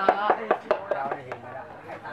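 Rapid, evenly spaced sharp knocks, about five a second, over voices; the knocks and voices fade out about a second in.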